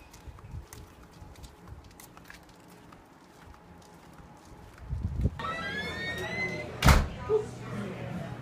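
A restaurant entrance door opens about five seconds in, letting in the sound of indoor voices, and a door bangs shut a couple of seconds later; that bang is the loudest sound here. Before it there are only quiet steps.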